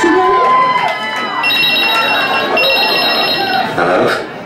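A telephone rings twice in the performance's soundtrack, each ring a steady high trill lasting about a second, with crowd voices and shouting underneath.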